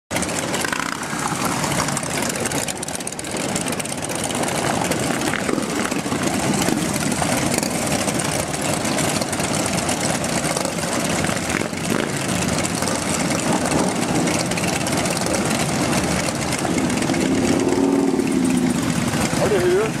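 Many Harley-Davidson V-twin motorcycles idling together in a group, a steady, dense rumble that swells a little louder near the end.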